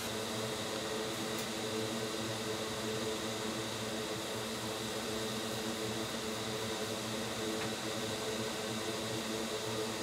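Steady mechanical hum and whir of a small motor, unchanging throughout.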